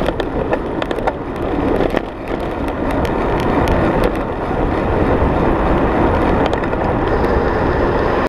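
Wind rushing over the microphone of a bicycle-mounted camera while riding, with a steady rumble of tyres on the road and scattered small clicks and rattles.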